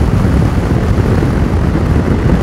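Steady rush of wind buffeting the rider's microphone at road speed on a Yamaha Tracer 7, with the motorcycle's CP2 689 cc parallel-twin engine running underneath.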